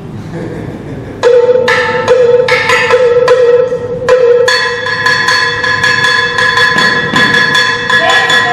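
Cuban salsa montuno music starts about a second in, carried by a cowbell (campana) struck in a steady, quick beat over held ringing tones.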